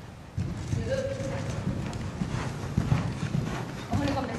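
Hoofbeats of a horse cantering on the sand footing of an indoor riding arena, a run of dull thuds that starts about half a second in as the horse comes close.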